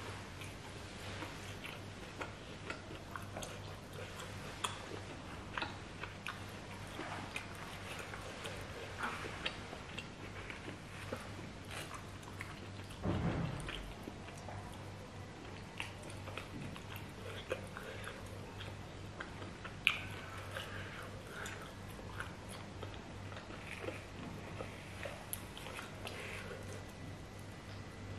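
Close-miked chewing and wet mouth clicks and smacks as a person eats pieces of roast pork in chili blood sauce, picked up with the fingers. A louder, deeper thump comes about halfway through, and a sharp click about three-quarters of the way in.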